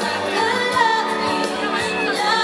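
A woman singing live into a handheld microphone over amplified pop backing music.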